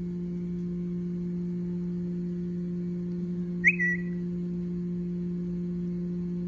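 A steady low hum with a second tone an octave above it. A little past halfway, one brief high squeak that dips slightly in pitch.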